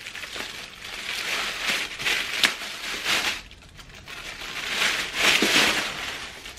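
Thin plastic packaging bag crinkling and rustling as a handbag is unwrapped and pulled out of it, in two long stretches with a sharp crackle about two and a half seconds in.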